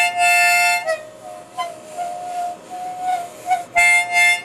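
Harmonica blown by a young child: a loud chord for about the first second, then softer, wavering notes, and loud chords again near the end.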